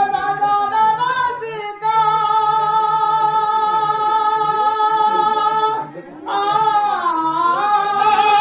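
A man singing a Sambalpuri karam shani folk song in a high, full voice. He holds one long note for about four seconds, breaks off briefly near six seconds, and comes back in with a phrase that dips and rises.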